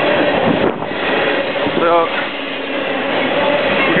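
Freight train running on the tracks close by, a loud steady noise without clear clicks.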